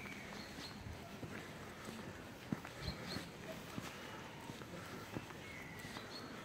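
Faint footsteps of a person walking on an asphalt road, heard as scattered soft taps over a low background hiss.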